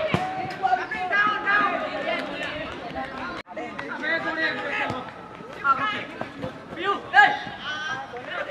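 Boys shouting and calling out to each other on a football pitch, several voices overlapping, with the sound cutting out briefly about three and a half seconds in.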